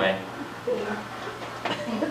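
Speech only: a voice in a couple of brief fragments, over a steady low hum.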